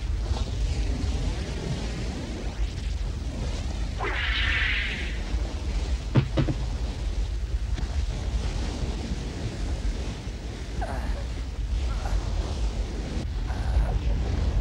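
Sea-and-wind ambience for sailing ships: a steady low rumble, with a surge of hiss about four seconds in and a sharp knock a couple of seconds later.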